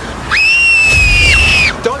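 A shrill, high-pitched scream of fright, about a second and a half long, rising sharply at the start and dropping away at the end.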